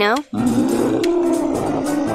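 A dinosaur roar sound effect answering the question: one long, rough call that starts a moment in and holds steady in pitch for about a second and a half, over light background music.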